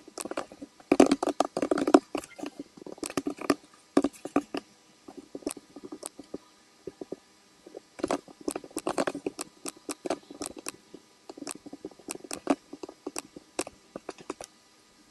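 Computer mouse clicks and keyboard keystrokes, in irregular bursts with short pauses. The densest flurries come about a second in and again around eight seconds.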